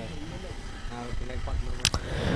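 Faint, distant voices of players on a cricket field, with a sharp click near the end.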